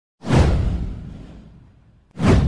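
A whoosh sound effect with a deep low boom, starting a moment in and sweeping down in pitch as it fades away over about a second and a half.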